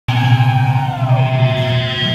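Amplified electric guitar and bass tones held and ringing through the stage amps over a steady low drone, with one note sliding down in pitch a little past a second in.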